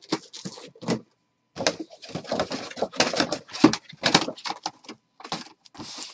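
Plastic packaging of a boxed mini helmet being handled: irregular crinkling, clicking and knocking of plastic, with a short pause about a second in.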